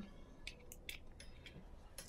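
Faint handling noise with a few scattered sharp clicks as the electric nail drill's plug and extension cord are connected; the drill motor is still off.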